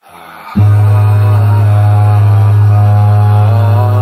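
TV station interlude music: a deep, steady drone comes in about half a second in, with a slow chanted vocal melody over it.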